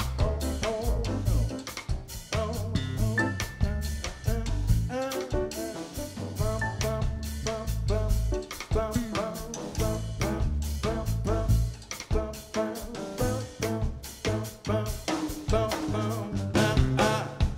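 Jazz band playing live: drum kit, electric bass and piano, with the drums prominent.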